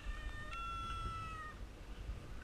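A high-pitched, drawn-out call in two parts, the second part held and falling slightly, ending about a second and a half in, over a low rumble of wind on the microphone.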